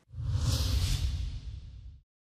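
Whoosh sound effect of a TV news channel's animated logo sting: a hissing swell over a low rumble that rises within the first half-second, then fades and cuts off abruptly at the end.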